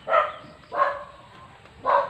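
A dog barking, three short barks in under two seconds.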